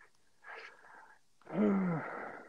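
A faint in-breath, then a drawn-out hesitation sound, a held "eh" at a steady, slightly falling pitch, from about one and a half seconds in.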